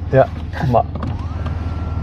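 Electric motor of a Mercedes GLE 53 AMG Coupé's panoramic roof opening: a whine that rises in pitch about a second in, then holds steady.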